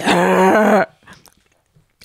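A person's voice letting out a short, loud growling snarl in imitation of an ape, under a second long, followed by a pause.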